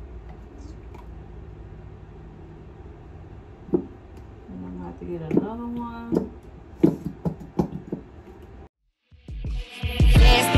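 Plastic clicks and knocks from handling a countertop liquid soap dispenser as it is filled, with a brief pitched sound like humming in the middle. Near the end the sound cuts out and loud hip-hop music begins.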